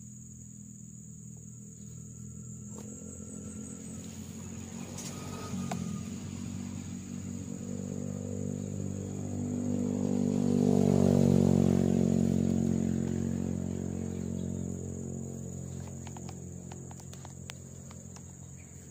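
A low droning hum that builds slowly to a peak about eleven seconds in and then fades away. Under it runs a steady high insect trill.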